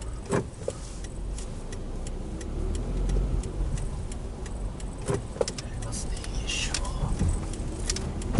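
Cabin sound of a Toyota Isis 2.0 pulling out onto a road: a steady low engine and road rumble, with the turn-signal indicator ticking at an even pace.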